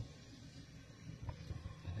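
Faint, steady rushing of a penny can alcohol stove burning with its afterburner jets lit.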